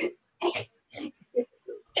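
A woman's short bursts of breathy laughter, about five brief ones in two seconds.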